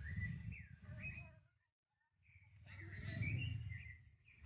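Birds chirping in short, gliding calls, over a louder low rumble of wind or movement on the microphone; the sound drops out briefly about halfway through.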